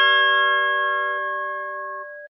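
Bell-like chime of a channel logo sting: a chord of several clear ringing tones fading away slowly.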